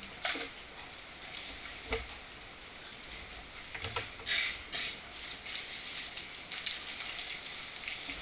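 Pages of a Bible being leafed through: a few short, soft paper rustles and flicks spread across several seconds.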